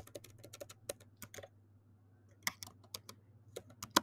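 Typing on a computer keyboard: a quick run of light keystroke clicks, a pause of about a second near the middle, then more keystrokes.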